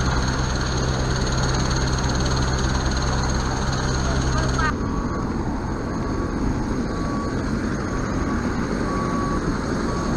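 A steady low engine drone. About halfway through there is a sudden change to open-air noise with a short high beep repeating roughly once a second.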